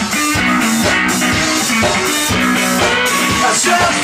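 Live blues-rock band playing an instrumental stretch: a repeating guitar riff over a drum kit keeping a steady beat.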